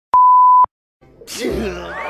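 A single steady, high electronic beep lasting about half a second, switched on and off abruptly with a click. After a short silence, music with voices comes in near the end.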